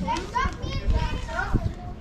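Children's voices in the background, talking and calling out in higher-pitched snatches.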